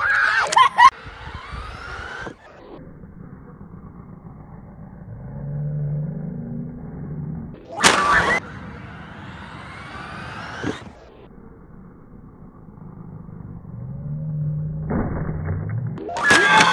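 Traxxas Slash electric RC truck driving, its motor whine rising in pitch as it speeds up. A loud sudden burst about eight seconds in comes as it takes the jump, followed by another rising whine.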